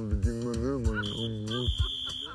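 A steady high electronic beep, like an alarm tone, comes in about halfway through, first briefly and then held longer, over music and a low hum.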